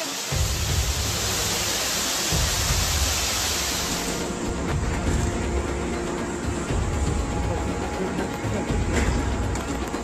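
Rushing floodwater, a steady roar that cuts off about four seconds in, over background music with a heavy bass that comes in just after the start.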